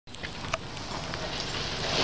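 Rain falling: a steady hiss with scattered light ticks of drops.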